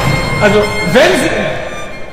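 Live orchestral music breaks off abruptly at the start. It is followed by a few brief sliding notes and voices that fade down.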